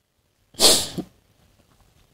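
One short, sharp breathy burst from the woman at the microphone, about half a second long, a little past half a second in.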